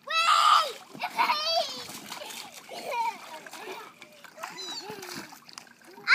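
Water splashing in a small inflatable paddling pool as young children play, with a louder splash and a high cry in the first half second and children's voices throughout.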